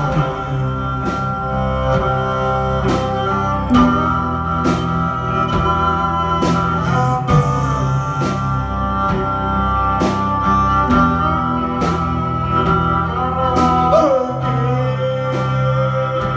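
Live band instrumental passage: a bowed viola holds long notes, sliding between some of them, over electric guitar and a low bass line, with a steady beat of sharp accents about once a second.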